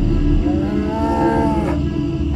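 A drawn-out, moo-like animal call that rises and then falls in pitch for just over a second, laid over the steady low background music.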